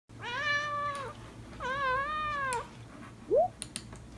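A domestic cat meowing twice, two long meows of about a second each, followed by a short rising squeak near the end and a few faint clicks.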